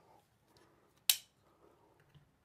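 A single sharp click about a second in, with a brief ring, from a Spyderco Endura folding knife being handled and brought onto a hard surface, followed by faint small clicks.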